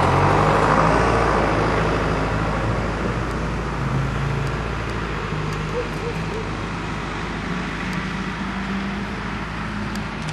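Truck engine running with a steady low hum, slowly fading over the whole stretch.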